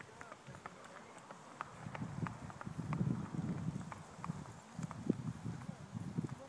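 Hooves of two horses walking on grass, a bay gaited gelding and a white horse, making soft, irregular footfalls, with faint, indistinct talk.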